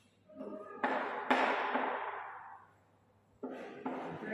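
A person's voice, with no words made out, in two stretches: one starting just after the start and lasting about two seconds, and another starting near the end.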